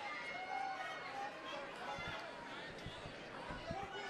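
Fight crowd shouting and calling out over one another, with a few short dull thumps in the second half, as of strikes or bodies landing on the cage mat.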